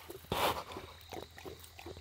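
Saint Bernard puppy lapping water from a small bowl: a quick run of wet licks and slurps, with one louder splashy slurp about a third of a second in.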